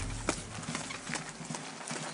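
Footsteps of shoes on concrete, a quick even walk of about two to three steps a second heading onto concrete stairs, over a low steady rumble.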